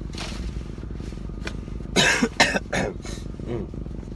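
A man coughs in a few short bursts about two seconds in, over a low steady rumble.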